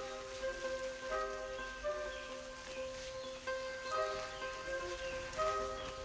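Documentary score: soft held chords on one steady low note, with new notes coming in above it about once a second.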